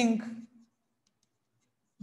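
A teacher's voice trails off in the first half-second, followed by near silence with a few faint ticks.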